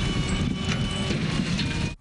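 An overturned pickup truck being pulled upright on a chain: a steady mechanical rumble with metallic clanking and creaking, and faint thin high squeals over it.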